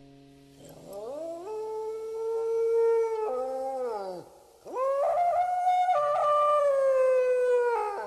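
Two long howling notes. Each slides up, holds steady and drops away at the end; the second starts about halfway in and is louder.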